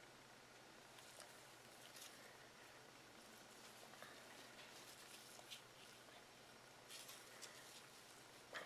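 Near silence with faint, scattered rustles of a gloved hand sifting through moist shredded bedding and compost in a worm bin, a few of them slightly louder near the end.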